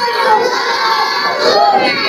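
Many children's voices chanting together in chorus, a loud group recitation of the kind a class gives when repeating a lesson in unison.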